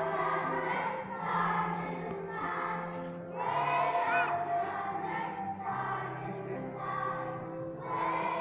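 Children's choir singing a song in unison, in phrases of about a second or two, over a steady instrumental accompaniment.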